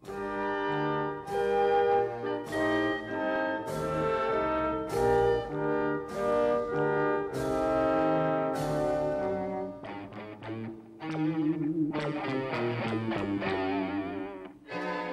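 Orchestral background music led by brass: a slow, solemn run of held chords, a new chord about once a second. About ten seconds in it thins to softer, wavering held notes.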